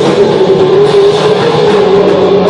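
Live rock band playing loud, with one long note held steady over the band.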